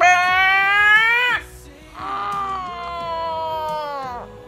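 A woman's long, high, wordless whining wails: two drawn-out notes, the first rising slightly and breaking off about a second and a half in, the second slowly falling.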